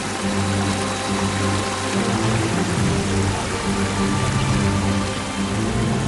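Background score of held low notes that change every second or so, over a steady rushing hiss.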